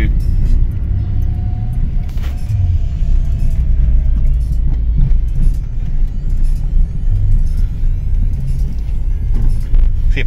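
Cabin noise of a Suzuki Swift with a 1.3-litre petrol engine on the move: a steady low engine and road rumble, with a faint whine that slides slightly down in pitch between about one and four seconds in.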